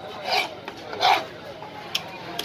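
Two rasping, scraping strokes about three-quarters of a second apart, then a sharp click near the end.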